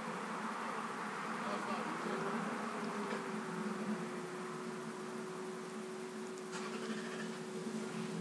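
A steady electrical hum with a low buzz underneath. Its tone rises slightly about two seconds in, then holds level.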